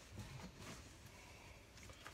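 Near silence, with faint rustling of packaging as items are handled inside a cardboard box.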